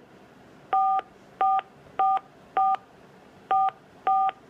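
Five DTMF keypad tones on a Panasonic desk phone, each a short two-note beep about a fifth of a second long, at uneven intervals as the '4' key is pressed again and again. The digits are being keyed into an automated phone menu that has asked for a mobile number.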